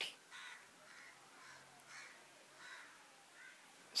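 Faint bird calls: about five short, scratchy calls spread through a pause in the talking.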